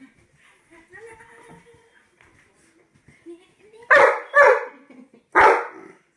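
A dog barking three times in the second half, loud and short, after some faint whining.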